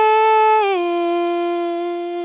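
A female voice singing unaccompanied, holding the drawn-out last note of the word "fading". The note steps down once, less than a second in, and is then sustained.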